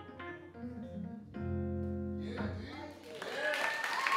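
Stage electric keyboard playing the last notes of a song, ending on a chord held for about a second. Audience applause and cheering then rise near the end.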